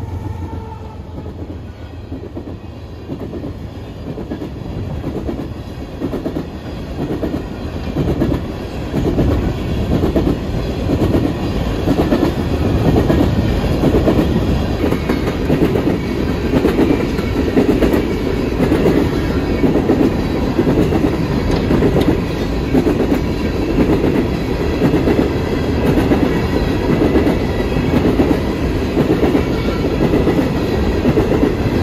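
Freight train of coal gondolas rolling past close by, steel wheels clacking rhythmically over the rail joints. The sound dips just after the locomotive goes by, then builds within the first several seconds to a loud, steady rumble and clatter as the cars pass.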